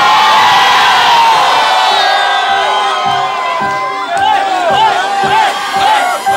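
Nightclub crowd cheering and whooping. About halfway through, a dance track's steady kick-drum beat and repeating synth line come back in under the cheers.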